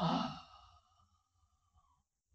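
A man's short audible breath at a close microphone, lasting about half a second.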